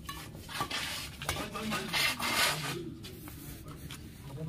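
Badminton rally: sharp racket strikes on the shuttlecock, with shoes scraping and scuffing on the gritty dirt court between them. The loudest scuff comes about two seconds in.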